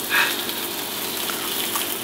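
Handheld sparkler fizzing with a steady hiss.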